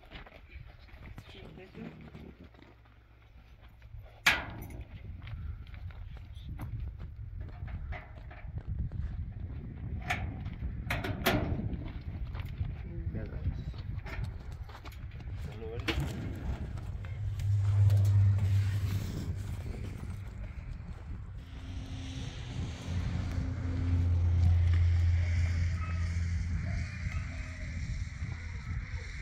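Firewood being handled: a few sharp knocks of wood on wood, one about four seconds in and three close together around ten seconds, over a low rumbling background that grows louder in the second half.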